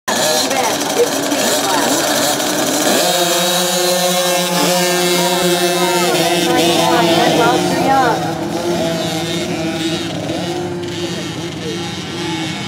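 A pack of small youth dirt-bike engines racing together: a mix of revving at first, then from about three seconds in a steady drone of several engines at full throttle, with pitches rising and falling. It grows gradually fainter toward the end as the pack moves off.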